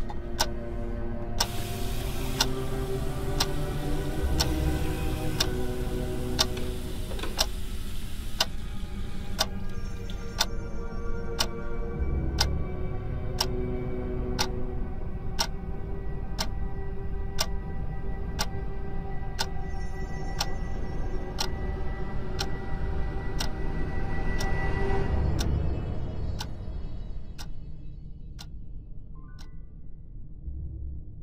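Dark film-score music: sustained, droning tones under a steady, clock-like ticking of roughly one tick a second. The tones fade out a few seconds before the end, leaving the ticking to die away.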